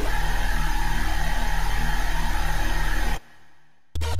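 Xfer Serum software synth playing one long held note from a wavetable made by typing the word "pigeon" into its formula editor: a thick, buzzy tone with five-voice unison and a sub oscillator underneath, its timbre shifting slightly as an envelope moves the wavetable position. The note stops about three seconds in and a faint reverb tail fades out.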